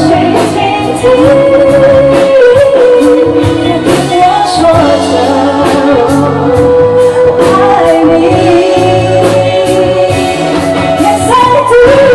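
A woman singing a song live into a handheld microphone, with long held notes, over a live band with bass and a steady drum beat.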